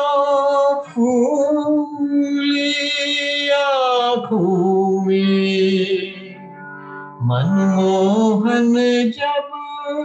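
A man singing a devotional song solo in long held notes with vibrato, dropping to a lower, softer phrase in the middle and returning full-voiced about seven seconds in, heard over a Zoom call's audio.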